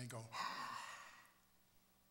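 A man's breathy, open-mouthed gasp of sudden realization, lasting about a second and fading out.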